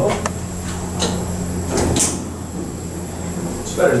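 Elevator doors of a 1972 Otis traction elevator sliding shut over a steady low hum, with a sharp clack about two seconds in as they close; the hum eases off at that point.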